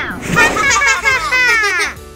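Several high-pitched cartoon character voices exclaiming and chattering over one another, with no clear words. They break off at the end.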